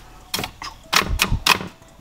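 Four sharp clacks of hard objects being handled and knocked together on a cluttered workbench, spread over about a second and a half.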